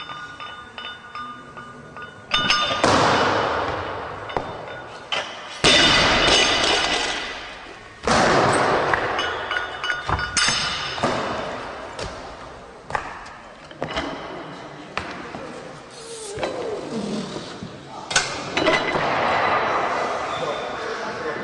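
A series of sudden loud crashes, about five, each ringing out for two to three seconds before the next.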